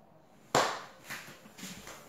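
A phone being handled: a sharp knock against the body about half a second in, then softer rubbing and bumps as it is grabbed and moved.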